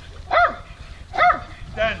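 A small dog barking a few short, high barks about a second apart.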